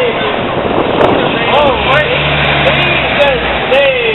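City-street traffic passing close by, with a vehicle engine humming steadily for about a second and a half from the middle of the stretch, under an indistinct voice.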